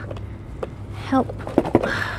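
A few sharp clicks and rustles of stacked paper popcorn containers being tugged apart by hand, the loudest two close together near the end, over a steady low store hum. A woman says "help" in the middle.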